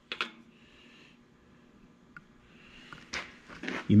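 A dial indicator set down on the machined steel deck of a Cummins diesel engine block, giving one short click just after the start, then quiet shop room tone. The start of speech comes near the end.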